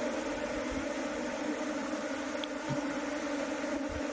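A disturbed swarm of bees buzzing in a steady, droning hum, with the bees flying thickly right around the microphone as a clump of them is scooped up by hand.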